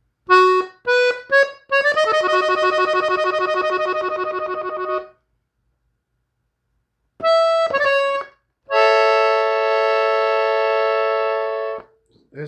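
Gabbanelli three-row button accordion, tuned in E, playing a passage on the treble buttons in B major. A few short notes lead into a held chord. After a pause of about two seconds come two more short notes and a long held chord that stops abruptly.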